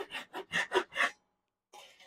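Japanese hand saw cutting through a wooden 2x4 in quick, short rasping strokes, about five a second, finishing the cut. The strokes stop about a second in.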